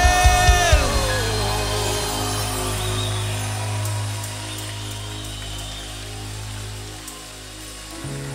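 Live worship band ending a song: a sung note held over a few drum hits in the first second, then a sustained band chord with a steady bass that slowly fades away.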